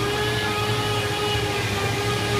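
A steady machine hum with a droning tone held at one pitch, over a lower background hum.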